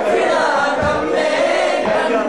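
A group of male voices singing together in a loud, continuous chant.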